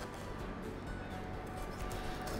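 Quiet background music with soft held tones.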